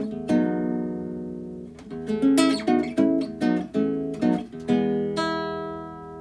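Nylon-string classical guitar fingerpicked: E major chord shapes and three-note triads plucked over the open low E string. Notes ring on between plucks, with a quicker run of plucks in the middle and a last chord that rings out and fades.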